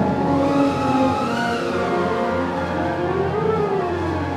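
A concert wind band holding sustained chords, while a pitched line slides up and down over them in slow, repeated arcs.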